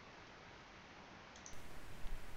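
Faint room hiss, then a couple of computer mouse clicks about one and a half seconds in, after which a louder hiss comes in.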